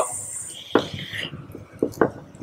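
A sub-ohm vape mod being drawn on and its vapour blown out: a soft hiss starting about half a second in and lasting under a second, then a few faint clicks and taps.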